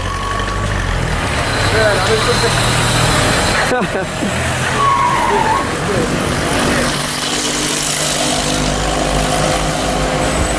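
Street traffic: car engines running as vehicles pass close by, over a steady outdoor hum, with scattered voices of people nearby.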